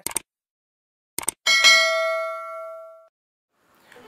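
Subscribe-button sound effect: two quick clicks, then a single bell ding that rings out and fades over about a second and a half.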